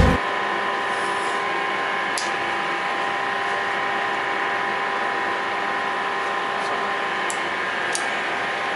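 Steady machinery hum made up of several constant tones over a haze, with a few faint short clicks from handling the metal hose coupling.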